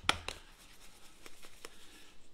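A small spice jar and its cap being handled: two sharp clicks at the start, then a few faint ticks.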